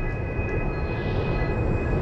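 Intro sound effect: a low rumble swelling steadily louder, with a steady chord of several high tones held over it, building up to the channel logo.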